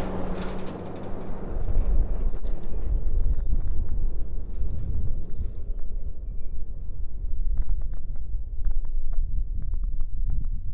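A Nissan Frontier pickup driving away on a gravel road, its engine and tyre noise fading over the first few seconds. Heavy wind rumble on the microphone follows.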